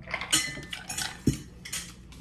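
Metal fork scraping and clinking against a plate several times in short bursts, with a dull thump a little past the middle.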